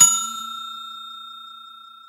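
A bell-like 'ding' sound effect of the kind used for a subscribe-button notification bell. One bright chime rings with several steady tones, loudest at the start and fading away smoothly.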